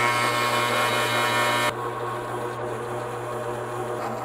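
Benchtop drill press motor running with a steady hum while a twist bit cuts a pilot hole into a hard steel brake pedal. About two seconds in the high cutting noise drops away and the sound turns quieter.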